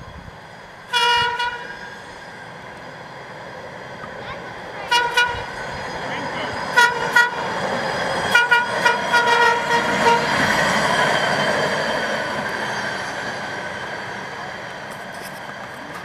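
Norfolk Southern hi-rail pickup truck sounding its horn as it runs along the railway track: one longer honk, then short double toots and a quick string of toots. The truck's running noise on the rails swells as it passes and then fades away.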